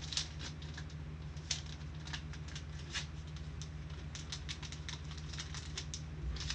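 Light, irregular clicking and crinkling of small objects being handled at a desk, over a steady low electrical hum.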